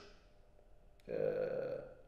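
A man's drawn-out hesitation sound, a flat held "eee" lasting under a second, after a short pause. A brief click comes just before it.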